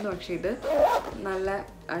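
Zipper on a makeup pouch being run along its track in the first second.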